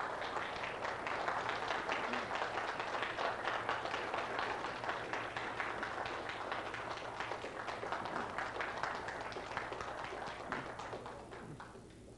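Audience applauding: many hands clapping in a dense patter that fades out about a second before the end.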